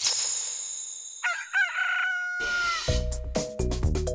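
A rooster crows once, a single cock-a-doodle-doo about a second long starting a little over a second in, over a bright high chime that rings from the start. Bouncy children's music with a steady beat starts just after the crow.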